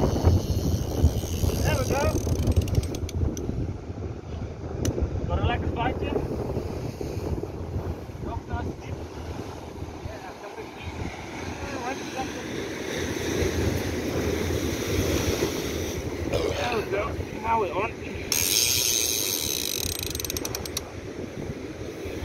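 Wind buffeting the microphone over surf breaking on a rocky shore, with faint voices now and then; near the end a high hiss rises for about two seconds.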